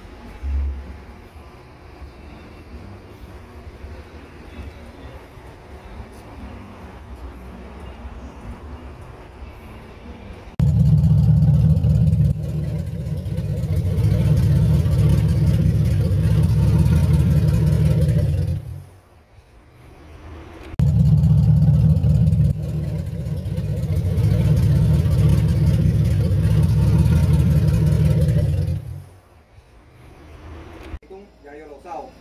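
Car engine revved and held high twice for about eight seconds each, with a short drop between, after a quieter low running sound for about the first third.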